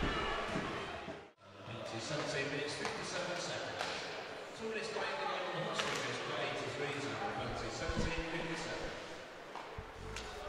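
Ice hockey rink ambience: crowd chatter in a large hall, with a few sharp knocks of stick, puck or boards. The sound drops out briefly about a second in, at an edit.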